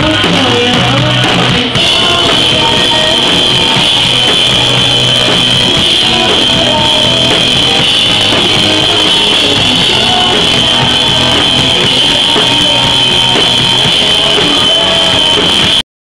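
Live rock band playing loud, with drum kit and electric guitar, recorded from the stage on a handheld camera. The sound cuts out suddenly just before the end.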